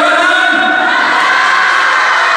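A crowd cheering and shouting together, loud and sustained, in response to the announcement of the contest's overall winner.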